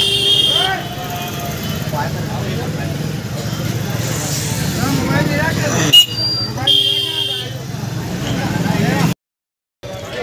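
Street crowd chatter and motorbike traffic, with a vehicle horn honking briefly twice: once at the start and again about seven seconds in. A sharp click just before the second honk is the loudest sound. The sound cuts out for about half a second near the end.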